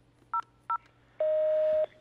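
Two short, identical telephone keypad (touch-tone) beeps, then a longer, buzzier beep lasting about two-thirds of a second.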